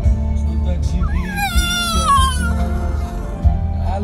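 Blue Staffordshire bull terrier puppy howling along to music: one high howl about a second in that rises, then slides down and stops after about a second and a half.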